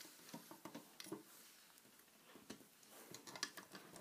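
Near silence with faint, scattered small clicks and taps of a Rainbow Loom hook and rubber bands being handled on the plastic loom.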